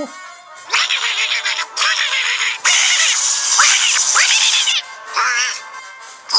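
A raspy, squawking Donald Duck-style cartoon voice in four outbursts, the third long and loudest, over background music.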